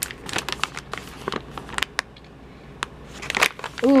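Crinkling of a NatureBox plastic snack pouch being handled, pressed along its top edge and turned over. It comes as a string of short, sharp crackles through the first couple of seconds and again shortly before the end.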